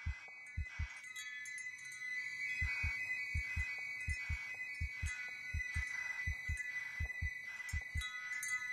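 A heartbeat sound effect, paired lub-dub thumps repeating a little faster than one a second, over sustained high chiming tones of a soundtrack.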